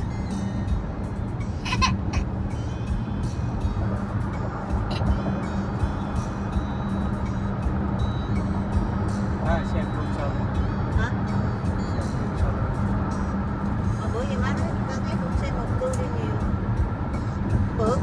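Steady road and engine rumble inside a moving car's cabin, with music playing and faint voices now and then.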